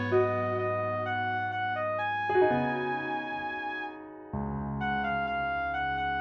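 Instrumental K-pop ballad backing track with sustained keyboard chords. The chord changes about two seconds in, and again after a brief dip in level around four seconds.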